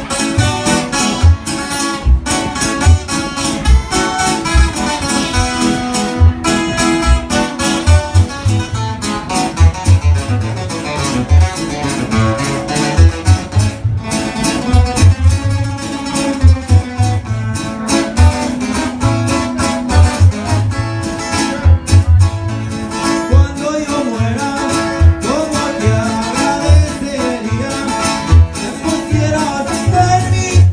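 Live sierreño music: an acoustic twelve-string guitar and a six-string acoustic guitar strumming and picking over regular plucked bass notes, with a man singing.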